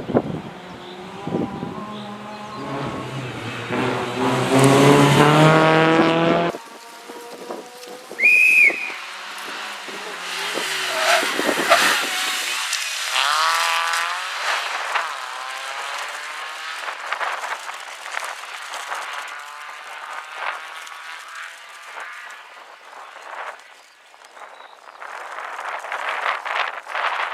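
Renault Clio Sport rally car's four-cylinder engine revving hard and climbing through the gears as it accelerates on a loose-surfaced road. The sound cuts off suddenly about six seconds in. It picks up again with another hard acceleration, then fades into the distance and grows louder near the end as the car comes back into earshot.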